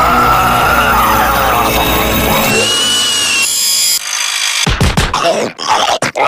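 Cartoon machinery sound effects: a whirring, whining machine with rising tones, which drops away about four seconds in, followed by a few sharp clanks near the end.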